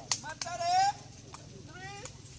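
A spectator's high-pitched shout, rising in pitch about half a second in and the loudest sound, with another short rising cry near the end. Sharp knocks of the sepak takraw ball being kicked come just after the start and again a little past the middle.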